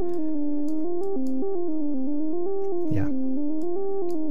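A VCV Rack software synth voice (VCO-1 oscillator through a VCF filter) playing a quantized diatonic step sequence in pendulum mode. One continuous tone steps down the scale note by note and then back up again.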